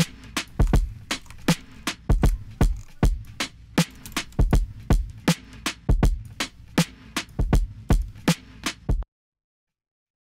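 Electronic drum loop playing back from a DAW: a sampled drum break layered with programmed kicks, one secondary kick shaped with a low-shelf EQ. Deep kicks and sharp snare and hat hits run in a steady groove until playback stops suddenly about nine seconds in.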